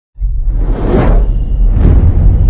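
Logo intro sound effect: two whooshes over a loud, deep bass rumble, the first swelling about a second in and the second near the end.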